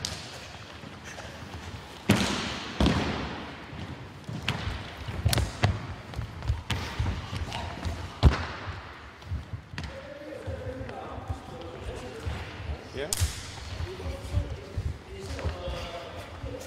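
Irregular sharp thuds and slaps echoing around a large sports hall, from feet stamping and stepping on the wooden floor during kung fu sparring, the loudest about two seconds in and again about eight seconds in. Voices talk in the background during the second half.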